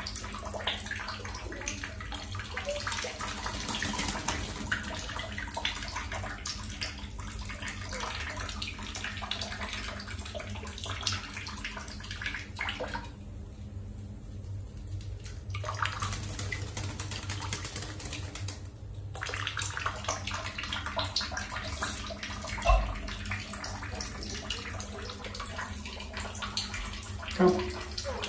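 Water sounds in a small tiled bathroom: a steady wash of water with scattered small splashes and drips.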